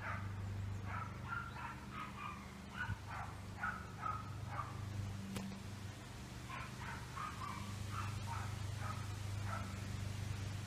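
A dog barking repeatedly in two runs of short barks, over a steady low hum.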